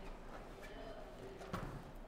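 Rolling suitcase being handled and tipped over on a hardwood floor: its handle and body knock a few times, with the sharpest knock about one and a half seconds in.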